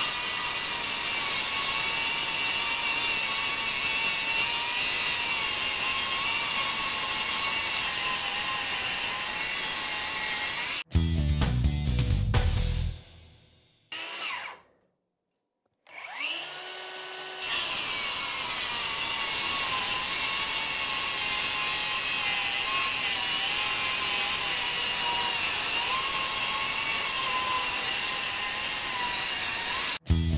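DeWalt DCS573 brushless cordless circular saw on a 5.0 Ah 20V Max battery, ripping continuously through OSB with a steady motor whine that wavers slightly in pitch under load. The sound cuts off sharply about eleven seconds in. A brief burst of music and a moment of near silence follow, and then the saw spins up and resumes cutting about seventeen seconds in.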